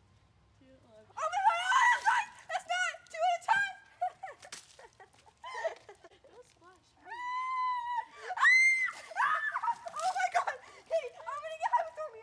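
Teenage girls shrieking and laughing as really cold water is dumped from cups onto one of them. High-pitched squeals start about a second in, with two long held screams about seven and eight and a half seconds in.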